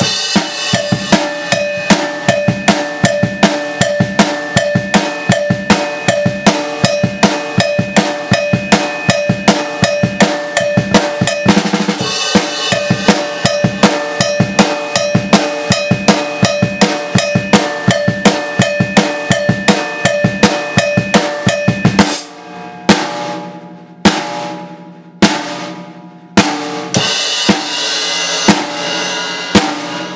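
Acoustic drum kit with Zildjian cymbals played solo: a busy, fast, steady beat on drums and cymbals, then after about twenty seconds a switch to a sparser beat of loud accents about a second apart, each left to ring.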